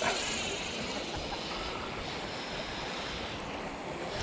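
Steady rush of wind on an action-camera microphone, with no distinct event standing out.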